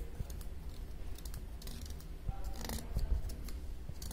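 Fine needle scratching and scoring the hard green rind of a pumpkin, in a series of short scraping strokes. The strongest strokes come about two-thirds of the way through.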